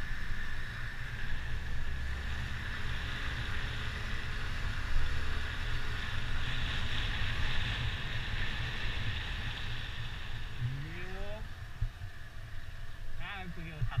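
Wind buffeting the microphone over a motorbike engine while riding: a steady low rumble, with a sound rising in pitch about ten and a half seconds in. Voices come in near the end.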